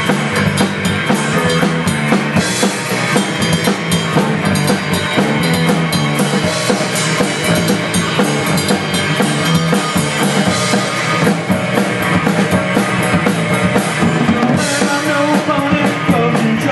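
Punk rock band playing live: a drum kit and electric guitar, loud and continuous, with the drums to the fore.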